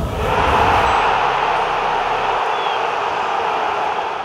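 Sound effect of a channel logo sting: a deep rumble carried over from a boom just before fades out about two and a half seconds in, under a loud, steady rushing noise.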